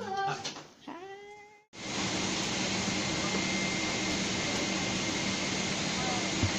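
Airliner cabin noise: a steady, even rush of air and engine noise with a constant low hum. It starts abruptly about two seconds in, after a brief squeaky whine that glides up and down in pitch.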